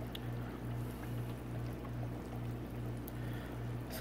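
Aquarium equipment running in the saltwater quarantine tank: a steady low hum with a light hiss of circulating water.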